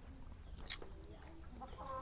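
A chicken clucking faintly, its notes growing into a longer, louder call near the end. A single sharp click comes about a third of the way in.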